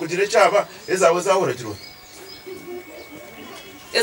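A voice speaking for about the first second and a half, then faint, low, repeated bird calls in the background.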